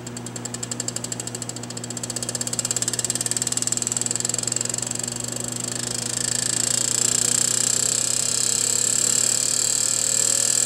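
Derritron DVS-50 electrodynamic vibration shaker driven from its amplifier in manual mode. Its table ticks in pulses that quicken steadily as the drive frequency is raised from 5 Hz, merging into a continuous buzz by about six seconds in. A faint tone rises in pitch near the end.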